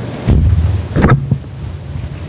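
Handling noise from a handheld microphone being lifted off its stand and passed from one person's hand to another's: a low rumble starting a moment in, with a sharp knock about a second in and a few smaller knocks after it.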